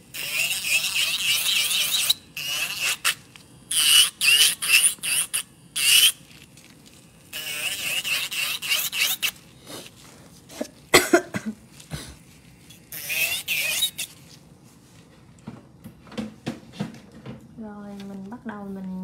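Electric nail drill with a ceramic bit running on the fast setting under acrylic nail tips: a high-pitched grinding whine that comes in five bursts of a second or two each, with a few short clicks in the gaps.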